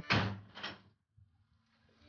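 A door shutting: a sudden knock at the start and a smaller one about half a second later, then faint room tone.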